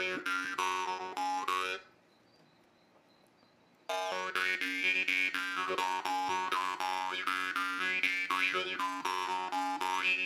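La Rosa marranzano (Sicilian jaw harp) played with quick, even plucks: a steady twanging drone with an overtone melody shifting above it. It stops just under two seconds in, falls nearly silent for about two seconds, then starts again sharply and carries on.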